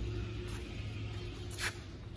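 Steady low background hum with a short breathy hiss about one and a half seconds in.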